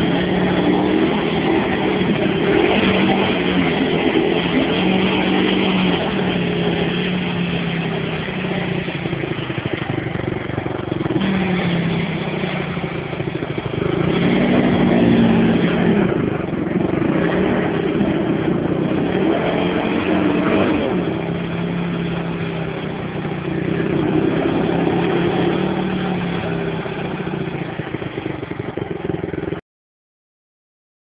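Dinli 450 quad's engine revving up and down again and again as the quad sits stuck in a muddy rut, its wheels spinning in the mud. The sound cuts off suddenly near the end.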